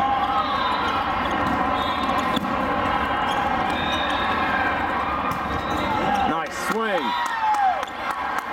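Steady din of a large hall during volleyball play: many overlapping voices with the sharp smacks of volleyballs being hit. Near the end, after a hard hit, players break into shouts as the point is won.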